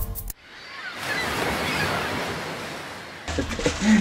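Ocean waves washing, swelling over about a second and slowly dying away. Near the end, low wind rumble on the microphone comes in.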